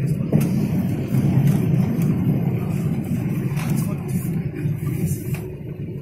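Airliner cabin noise at touchdown and on the landing roll: a loud, steady low rumble from the runway and engines, with a brief knock just after the start, easing slightly near the end.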